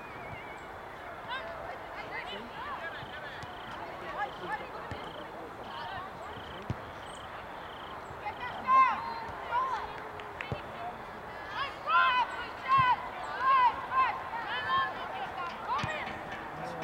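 Distant shouting of youth soccer players and spectators across an open field over a steady outdoor background, growing into a run of loud, short shouted calls from about halfway in.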